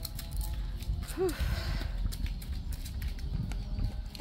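Wind rumbling on the microphone, with scattered light clicks and rustles as a small chihuahua sniffs through dry leaves and grass at a tree's roots; a short exhaled "whew" comes about a second in.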